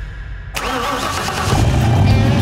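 A car engine starting as an outro sound effect. It catches suddenly about half a second in with a rising rev, then runs with a strong, deep low note.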